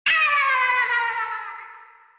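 A single long pitched sound effect that starts suddenly, slides slowly down in pitch and fades out over about two seconds.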